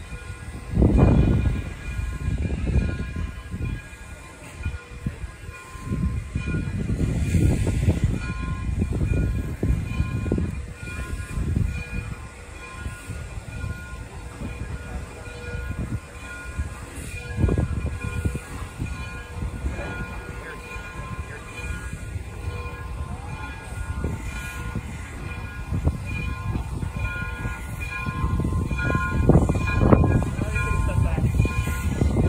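Frisco 1630, a 2-6-0 steam locomotive, moving slowly tender-first, with a low rumble that swells and fades several times over faint steady high tones.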